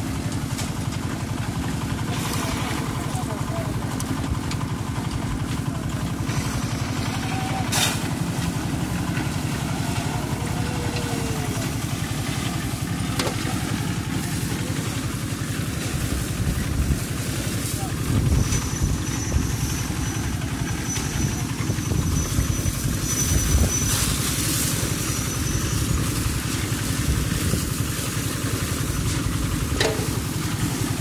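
Engine of a drum concrete mixer running steadily as a low drone, with a few sharp knocks.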